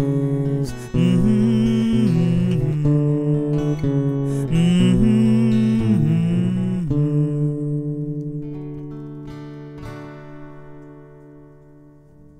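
Breedlove acoustic guitar playing the closing bars of a song: picked chords until about seven seconds in, then a last chord that rings and slowly fades away.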